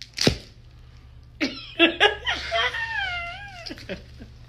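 A series of short high calls, then one long, wavering meow-like wail that dips and rises in pitch, following a short sharp sound near the start.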